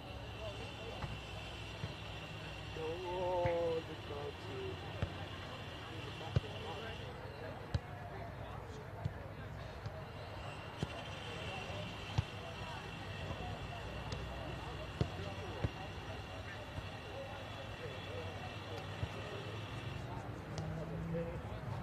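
A football being kicked around on grass: single sharp thuds, spaced a second or more apart. A short distant shout about three seconds in, and a steady high-pitched buzz in the background that drops out for a few seconds midway.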